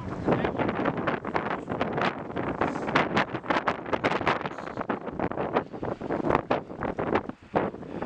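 Strong wind buffeting the camera microphone in irregular gusts.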